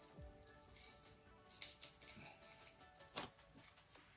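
Faint background music, with a few soft clicks and rustles of sleeved Yu-Gi-Oh! cards being pushed apart by hand, the clearest about one and a half seconds in and again near the end.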